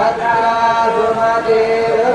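Chanting of mantras by a single voice, in long held notes that step between a few pitches with short breaks.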